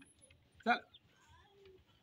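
Faint voices talking, with one short, louder vocal sound about two-thirds of a second in.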